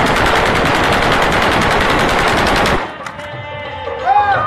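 An automatic rifle fired into the air in one long, continuous burst of rapid, evenly spaced shots lasting nearly three seconds, cutting off abruptly.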